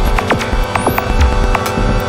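Improvised experimental electronic music: a steady droning hum of stacked tones over irregular low throbbing bass pulses, scattered with sharp glitchy clicks and ticks. A faint high rising chirp comes about three quarters of a second in.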